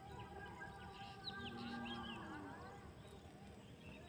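Faint background birdsong: several birds chirping and whistling in short, overlapping calls, with quick high sweeps in the first half.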